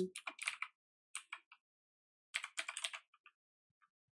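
Computer keyboard being typed on in three short bursts of keystrokes, with pauses of about a second between them and a couple of faint taps near the end.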